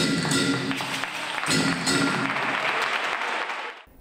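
Andalusian pastoral Christmas group singing and playing. The music ends about a second and a half in, and audience applause follows and dies away just before the end.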